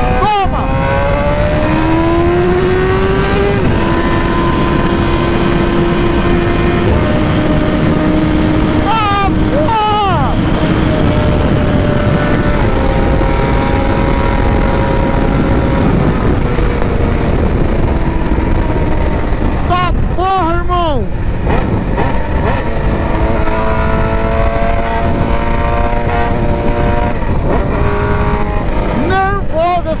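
BMW S1000 sport bike's inline-four engine running at road speed, its note holding steady and then swinging quickly up and down in pitch about a third of the way in, about two-thirds of the way in and near the end. Wind rushes heavily over the microphone throughout.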